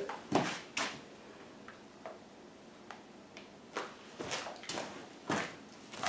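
Tools being handled and set down: several soft knocks and clicks at irregular spacing, with quiet room tone between.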